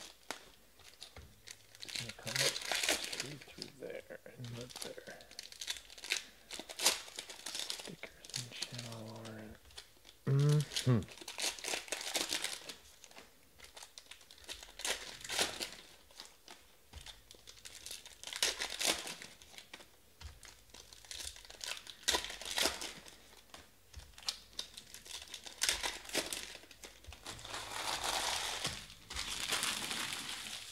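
Foil trading-card packs being torn open and crinkled by hand, a continuous run of short crackling rustles, with cards shuffled between them.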